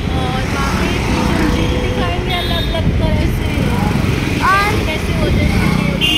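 Steady road and wind rumble from riding on a moving motorbike in traffic, with short snatches of voices over it.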